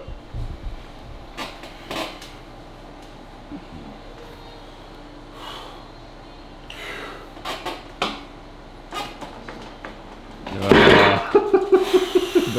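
Steel back-pressure arm-wrestling rig lifting a 75 kg load of weight plates on a cable: scattered clicks and knocks from the rig and the hanging plates. A loud burst of noise comes about eleven seconds in, as the lift finishes.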